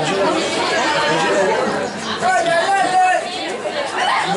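Overlapping voices of several people talking at once: chatter with no single clear speaker.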